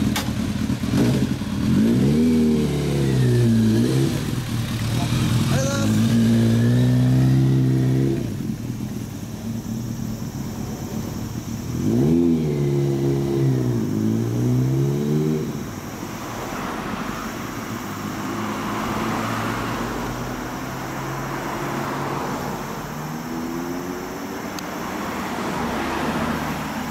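2003 Kawasaki ZRX1200S inline-four with an aftermarket Tsukigi Racing exhaust, which the owner says is just over the legal noise limit. The engine is revved hard as the bike pulls away, the pitch climbing and dropping back with each upshift three times. It then runs on more quietly as it moves off into street traffic.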